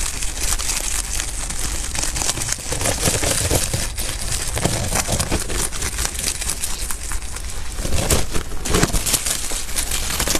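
A rabbit chewing dried leaves and hay close to a microphone: a steady run of rapid dry crunching and crackling, with leaves rustling as they are pulled into its mouth.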